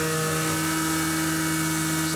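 CNC milling machine's spindle running with an end mill cutting an aluminium part: a steady whine of several even tones over a constant hiss.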